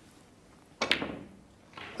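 Snooker cue striking the cue ball, then the cue ball clicking against a red: two sharp clicks close together about a second in, out of a quiet arena.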